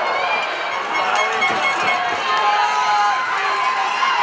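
Spectators at an ice hockey game shouting and cheering, many voices at once.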